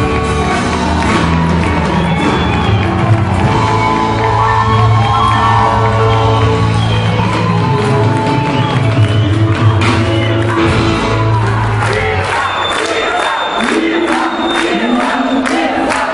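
Live band music with a strong bass line and singing while a crowd dances and claps. About twelve seconds in the bass drops out, leaving the crowd cheering and singing along over rhythmic clapping.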